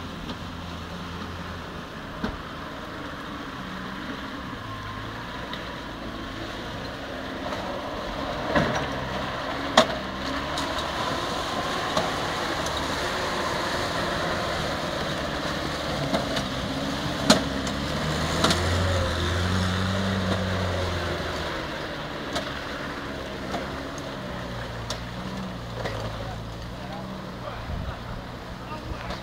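Land Rover engine running under load and revving as the vehicle drives through a muddy pond, with water splashing. The engine is loudest in the middle, and there are a few sharp knocks, about ten and seventeen seconds in.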